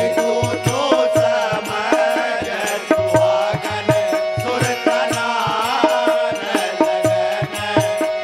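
Devotional bhajan music: a hand drum keeps a quick, regular beat under a steady held note and a wavering melody line.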